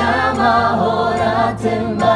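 A choir of young men and women singing a gospel song together.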